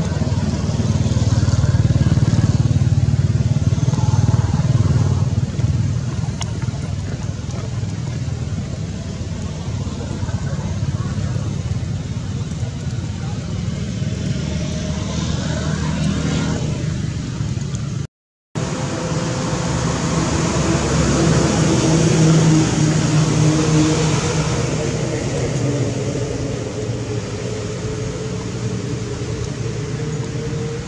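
Outdoor background noise: a steady low rumble like motor traffic, with faint voices mixed in. The sound drops out for a moment about 18 seconds in, then resumes.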